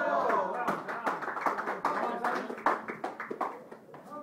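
Spectators' voices, an 'oh' at the start and then overlapping talk, over a run of irregular sharp claps and slaps; the sharpest slap comes about two-thirds of the way through.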